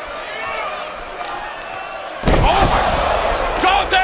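Arena crowd noise, then about two seconds in a heavy slam of a wrestler's body hitting the ring, with loud voices after it.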